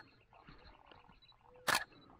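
A single-lens reflex camera fitted with a white telephoto lens fires its shutter once near the end, a single sharp click.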